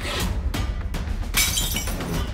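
Glass shattering twice over dramatic background music, the louder crash about one and a half seconds in.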